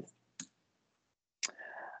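Two short, faint clicks about a second apart, then a faint breath just before speech resumes.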